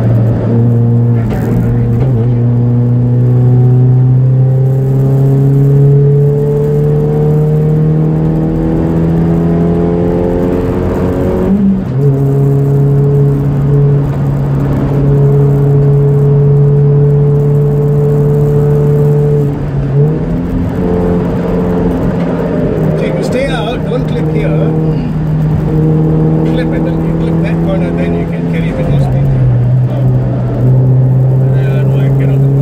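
Toyota Vios race car's four-cylinder engine heard from inside the cabin on track. It pulls up through the revs for about ten seconds, drops in pitch at an upshift, and holds steady. Later the revs jump up once at a downshift and drop again at another upshift near the end.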